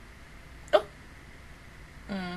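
One brief, sharp vocal sound from the person right at the microphone, a little under a second in, over quiet room tone.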